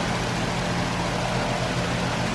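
Steady background hiss with a low, even hum, unchanging throughout.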